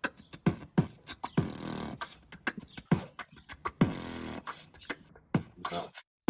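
Recorded human beatbox by a young man in speech therapy for oro-facial hypotonia, a few weeks into practice. It is a steady groove of deep kick-drum sounds that drop in pitch, with sharp snare and hi-hat clicks and hisses between them.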